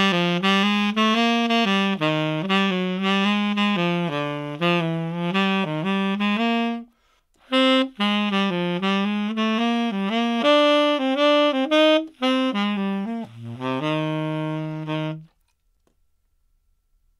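Unaccompanied tenor saxophone playing a swung rhythm exercise: a string of short notes in its low-middle register, a brief pause about seven seconds in, then more phrases ending on a long held low note near the end.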